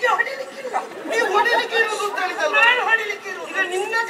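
Speech: a man talking in a stage dialogue.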